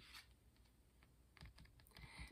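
Near silence with a few faint clicks and taps of tarot cards being picked up and handled on a table, most of them in the last half second.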